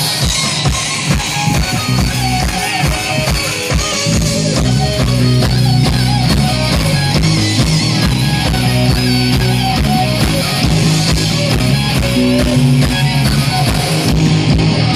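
Live rock band playing loud through a stage PA: distorted electric guitars over a pounding drum kit, the bass growing fuller about four seconds in.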